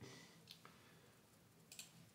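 A few faint computer mouse clicks over near-silent room tone, one about half a second in and a close pair near the end.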